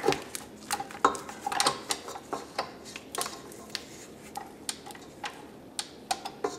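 A spatula scraping the inside of a stainless steel stand-mixer bowl with the mixer switched off: irregular light scrapes and clicks against the metal.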